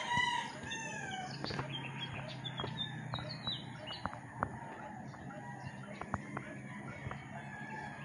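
A rooster crowing, its call trailing off and falling in pitch in the first second. Then come scattered short, faint high bird chirps and a few light clicks.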